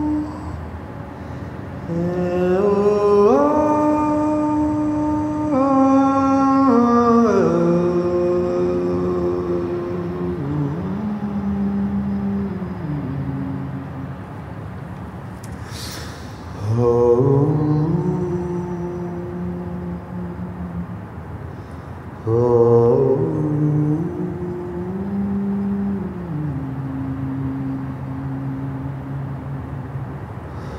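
A man singing a slow, unaccompanied tune in long held notes that step up and down, phrase by phrase with pauses between, inside a concrete culvert. A single sharp click about halfway through.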